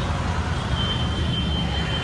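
Roadside traffic noise: a steady rumble and hiss of passing vehicles. A thin, high steady tone joins in about a second in.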